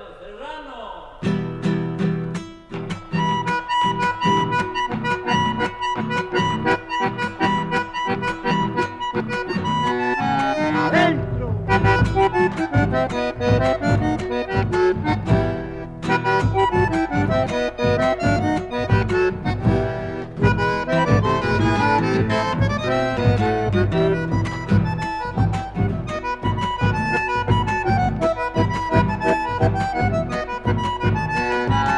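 An accordion-led folk band plays an instrumental gato, a dance tune. The band comes in about a second in, and the bass fills out about a third of the way through.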